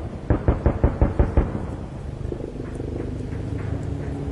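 A rapid burst of about eight sharp bangs from a military attack helicopter firing its weapons, ending about a second and a half in. It is followed by the helicopter's steady, lower running noise.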